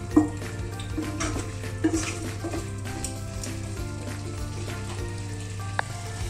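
Thick chicken masala gravy sizzling in a pan as a wooden spatula stirs it, with a few light knocks and scrapes of the spatula against the pan.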